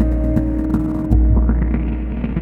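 Live electronic music from synthesizers: a deep, throbbing bass pulse that swells about every one and a half seconds under a sustained drone. The higher drone tones fade about a second in, just as a new bass pulse starts.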